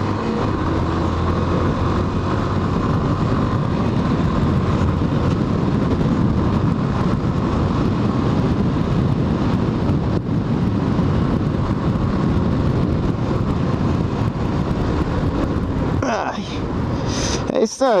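Yamaha Factor 150 single-cylinder motorcycle engine running steadily under way, mixed with wind rushing over the microphone. The sound holds steady throughout, with a brief voice near the end.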